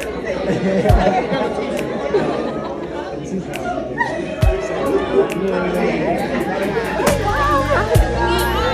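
Several people chatting at once over background music, with two low thumps about one second and four and a half seconds in; the music's bass grows fuller near the end.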